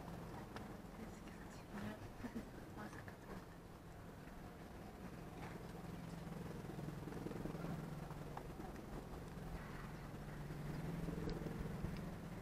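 Quiet outdoor tennis-court ambience: a steady low hum, a few faint scattered knocks in the first few seconds, and faint, indistinct voices later on.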